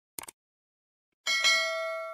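Sound effects for an on-screen subscribe animation: a short mouse click, then about a second later a bright notification-bell ding that rings on and fades.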